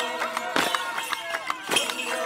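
Indistinct chatter of several people talking at once, with two sharp knocks, one about half a second in and one near the end.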